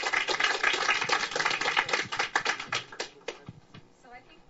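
Audience applauding, the clapping dying away about three and a half seconds in.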